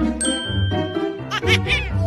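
A bright, ringing ding sound effect about a fifth of a second in, held over bass-heavy background music. Near the end come quick laughs.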